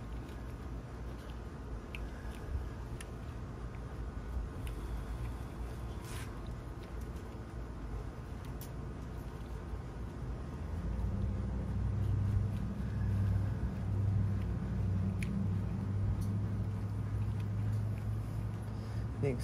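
Faint scattered clicks of a wiring harness and its plastic clips being handled on an automatic transmission valve body, over a steady low rumble. The rumble swells into a louder, steady low drone about eleven seconds in.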